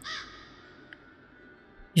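A single crow caw, short and harsh, dropping slightly in pitch, right at the start.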